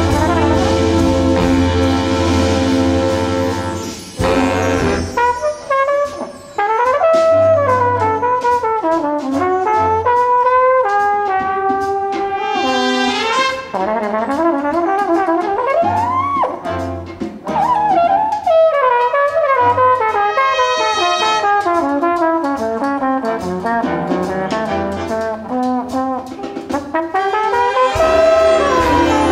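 Mellophonium solo with a jazz big band. The full band holds a loud brass chord for the first few seconds. Then a single mellophonium line carries on over drums and rhythm section, with sliding notes and a swooping rise and fall about halfway through.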